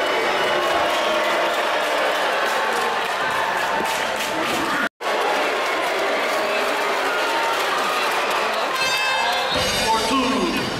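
Basketball arena crowd noise, many spectators talking at once, with music playing over it. The sound drops out completely for a moment about halfway through, where the recording cuts.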